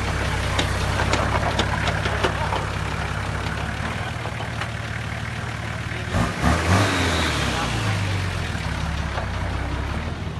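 Nissan Patrol 4x4 engine idling steadily, with a brief louder burst a little past the middle.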